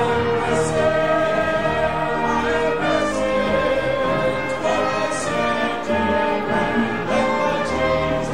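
Congregation singing a hymn together, accompanied by a small church band with saxophone and trumpet.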